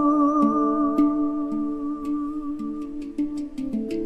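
Handpan (Hang) struck by hand in soft notes about twice a second, under a held sung drone with a wavering, whistle-like overtone melody above it: polyphonic overtone singing. The overtone fades out about three seconds in, and the handpan notes come faster near the end.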